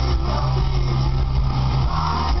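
Live hard-rock band through a large outdoor PA, recorded from the crowd: a loud, held low distorted chord on bass and guitar. The chord changes just before the end.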